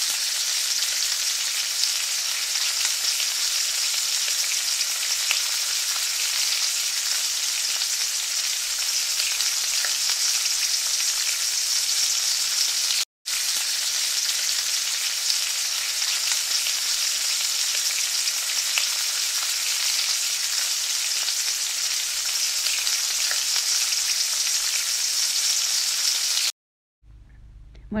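Tortillas dipped in red chile sauce frying in olive oil in a nonstick skillet: a steady sizzle with fine crackling. It breaks off for an instant about halfway through and stops abruptly about a second before the end.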